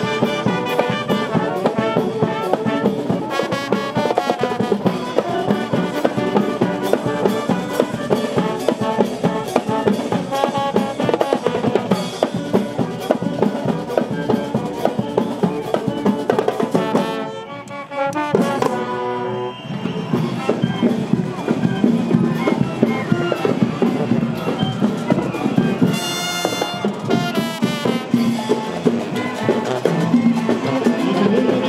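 A school marching band playing live: saxophones, sousaphones and other brass over drums, in a steady beat. The band drops out briefly a little past halfway, then comes back in.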